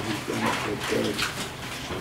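Low cooing of a pigeon, two short calls about half a second and a second in.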